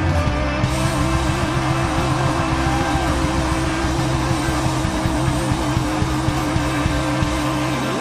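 A live rock band holds a distorted closing chord at the end of a song. A wavering sustained tone rides over a steady low drone and a dense wash of cymbal and crowd noise, and the held tone breaks off just before the end.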